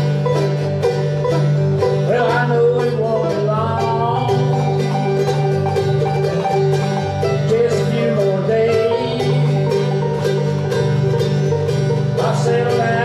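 Bluegrass band playing, led by a five-string resonator banjo picked in a fast, unbroken roll of notes over a steady low accompaniment.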